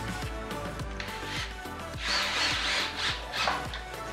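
Cordless drill driving a screw into a bifold door's hinge in a burst of about a second, halfway through, over background music with a steady beat.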